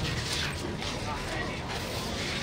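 Crowd of mourners beating their chests with open hands (latm) in a pause between chanted verses, a dense patter of slaps with crowd voices under it.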